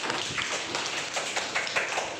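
A class of schoolchildren clapping their hands, many uneven, overlapping claps.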